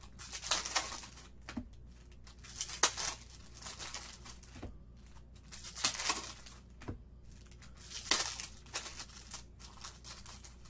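Trading card pack wrappers being torn open and crinkled by hand, in about four short bursts of crackling a few seconds apart.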